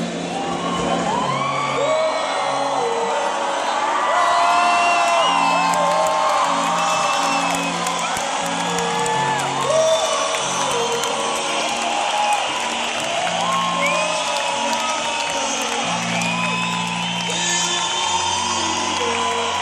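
Live band music played through a venue's sound system, with held bass notes changing every second or so. A crowd whoops and sings along over it.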